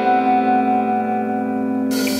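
Instrumental passage of a prog-rock song: a held guitar chord rings out with effects and reverb and no bass underneath. Near the end a cymbal crash brings the drums back in.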